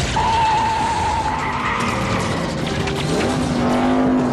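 Movie car-chase sound: a tyre squeal through about the first second, then engines running, with one rising rev near the end, over dense road noise.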